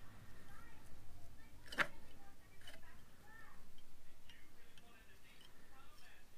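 Faint, quick ticking of rod-wrapping thread being wound by hand around a fishing rod blank, with one sharper click about two seconds in.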